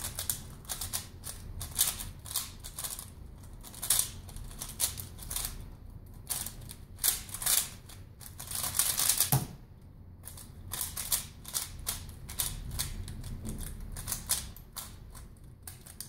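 Rapid, irregular clicking and clacking of a Valk Power 3x3 speedcube being turned at speed during a solve. A thump about nine seconds in marks the end of the solve, after which the turning clicks go on more quietly.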